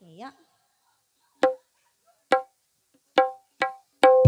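Four short single notes of the same pitch on a band instrument, each struck sharply and fading quickly, the first three about a second apart and the last following closer. They are a cue that leads into the next dangdut song.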